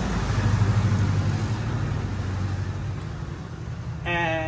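A motor vehicle passing by: a low engine rumble that swells about half a second in and then slowly fades away.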